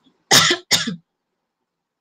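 A woman coughing twice in quick succession, two short coughs close together.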